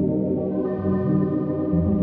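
Ambient music of sustained, organ-like keyboard chords that hold steady and shift chord about half a second in and again near the end.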